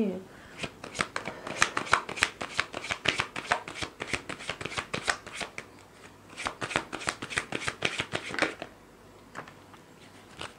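A tarot deck shuffled by hand: quick runs of card edges flicking and slapping together, in two spells of about three and four seconds with a short pause between. The shuffling stops a second or so before the end.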